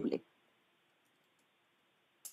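A man's spoken question ends just after the start, followed by near silence with a few faint clicks.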